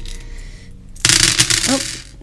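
A handful of small metal charms being rattled and dropped onto a cloth-covered table, a bright clinking clatter about halfway through.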